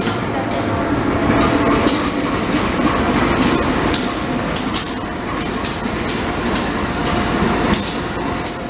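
CC201-class diesel-electric locomotive (GE U18C) running close by. Its engine gives a loud steady drone, mixed with irregular metallic clicks and clacks.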